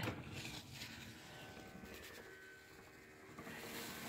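Electric power awning motor on a living-quarters horse trailer running as the awning extends: a faint, steady hum.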